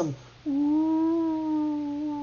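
A man's voice holding one long, steady hummed "oooo" tone for about two seconds, imitating a wind-made sound that he first took for a shofar blast.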